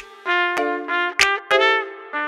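Upbeat hip-hop instrumental in F major at 96 bpm: a bright brass-style horn melody of short notes over sharp drum hits that land about once a beat.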